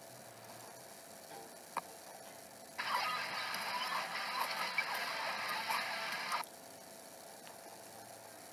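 A tinny burst of the animation's soundtrack from a laptop speaker, about three and a half seconds long, starting and stopping abruptly, with sharp clicks through it. Quiet room tone before and after.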